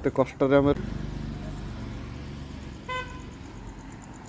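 A vehicle horn gives one short toot about three seconds in, over a steady low engine hum. A man's voice speaks briefly at the start.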